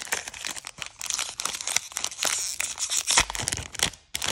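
Foil wrapper of a Panini Mosaic basketball card pack being torn open and crinkled in the hands: a dense run of crackling, with a louder crinkle and bump a little after three seconds in.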